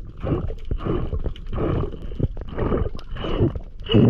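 Muffled underwater sound through a head-mounted GoPro housing: rhythmic swooshing surges of moving water, about every two-thirds of a second, as the freediver swims down through kelp.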